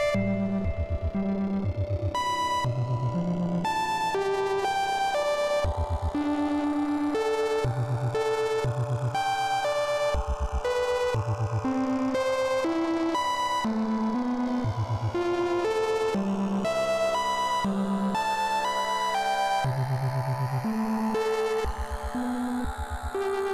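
VCV Rack software modular synthesizer patch playing electronic drone music: synthesized tones step from pitch to pitch, roughly one or two notes a second, in the bass and middle range over a continuous droning bed.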